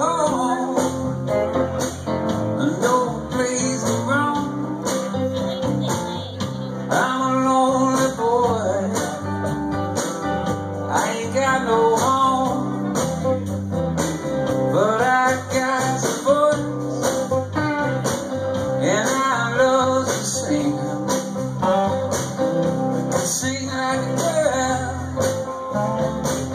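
Live blues-country band playing an instrumental passage: electric and acoustic guitars, bass guitar and hand drum, with a lead guitar line of sliding, bent notes over the steady accompaniment.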